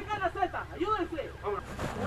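Raised voices of several people calling out over one another, unintelligible, as rescuers coordinate lifting a stretcher.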